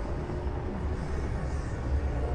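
Ford Mustangs rolling slowly past in a line, giving a low, steady engine rumble.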